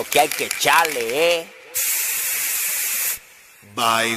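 A steady burst of hiss-like noise, a production effect in a dembow track, lasting about a second and a half and cutting off abruptly. It follows a short vocal phrase, and a held, unchanging chord comes in just before the end.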